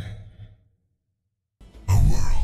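The breathy tail of a man's voice, processed to imitate Bane's masked voice, fading out over the first half second. Then dead silence, and sound cuts sharply back in just before the end.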